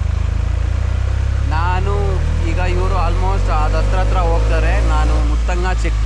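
Small goods truck driving along with its engine running steadily, a low drone with road and wind noise. A voice talks over it from about a second and a half in until shortly before the end.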